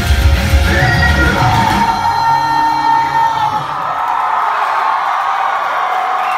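Live rock band playing the final bars of a song, with the drums and bass dropping out about two seconds in while the guitars ring on. A crowd yells and whoops over the ringing guitars.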